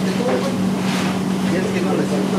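Indistinct background voices over a steady low machine hum.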